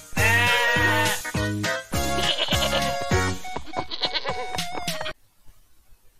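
A goat bleating over bouncy children's music with a steady beat; both stop suddenly about five seconds in.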